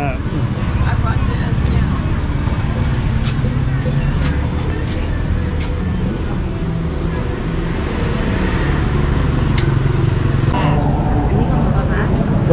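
A motor vehicle engine running steadily at low revs, with traffic noise and a few short clicks.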